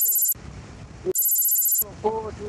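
Two short bursts of a high electronic ringing tone, like a phone ring, each under a second long, the first right at the start and the second about a second later. The road and wind noise cuts out completely under each burst, so the tone sounds like an effect laid over the audio.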